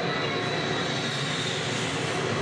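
A steady rushing noise with a faint high whine, filling a break in the beat of the dance soundtrack.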